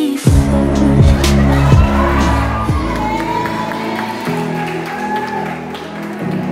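Slow pop song playing with no words sung: sustained synth chords over deep bass, with a few strong bass hits in the first three seconds.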